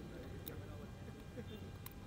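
Low street background with faint voices and two faint clicks, one about half a second in and one near the end.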